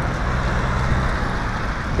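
Steady low rumble of road traffic, with a faint engine hum.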